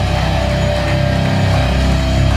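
Loud live rock/metal band playing: distorted electric guitars over a heavy bass low end, with a held note ringing through.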